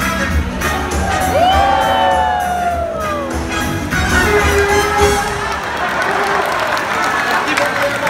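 Upbeat show music with a steady beat over an audience, with a few long whoops that rise and then fall about a second in. The beat then drops back and the crowd cheers and shouts, with a voice over the loudspeakers.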